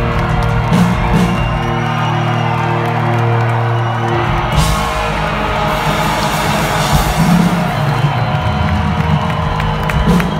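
Punk rock band playing live on stage, loud amplified guitars and drums, with a crowd whooping and cheering along.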